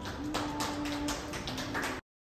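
Scattered hand claps from a few listeners at the close of a piano piece, about ten sharp, uneven claps, with the last of the piano's sound faint underneath.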